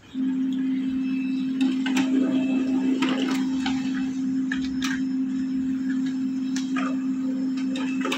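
Canon LBP215x monochrome laser printer running a two-sided print job: a steady motor hum that starts at once, with scattered light clicks of the paper feed.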